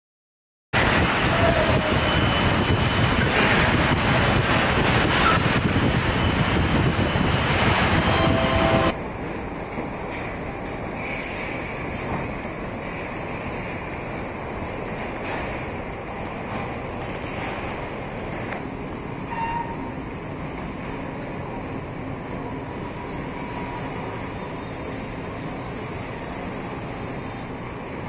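Car assembly-line machinery noise: a loud, dense mechanical clatter that starts abruptly just under a second in and drops suddenly to a quieter steady hum about nine seconds in, with a few faint clicks and short tones.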